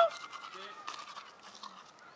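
Faint scrubbing of a manual toothbrush on teeth, after a brief loud voice sound right at the start.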